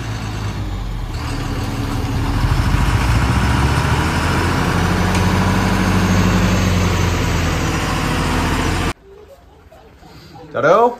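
Tata tipper truck's diesel engine running while its bed is raised to tip a load of soil. The engine grows louder about two seconds in and holds a steady pitch while the bed rises. The sound cuts off abruptly shortly before the end.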